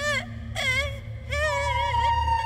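A woman whimpering and moaning in fright, short wavering cries one after another. A steady held musical tone comes in about a second and a half in.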